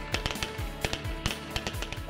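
Background music with a rapid, irregular run of sharp cracks from several rifles firing, kept quiet under the music.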